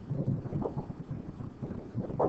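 Low, uneven rumbling with a few soft knocks: handling noise from a stylus writing on a pen tablet, picked up by the microphone.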